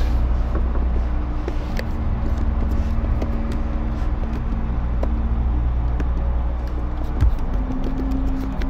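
Low, steady ambient background music drone with held notes that shift about seven seconds in, with sparse keyboard key clicks as text is typed.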